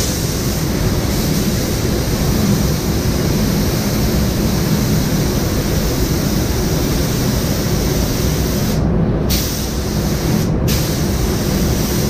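Paint spray gun hissing as a bumper is sprayed, over the steady rumble of the spray booth's ventilation. The spray hiss cuts out briefly about nine seconds in and again about ten and a half seconds in, as the trigger is released between passes.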